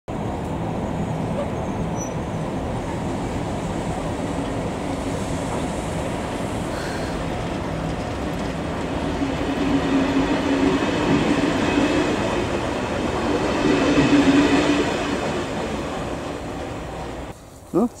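Passenger train hauled by two electric locomotives passing close by: steady rolling noise of wheels on rail as the coaches go past, growing louder about two thirds of the way through, then cutting off suddenly near the end.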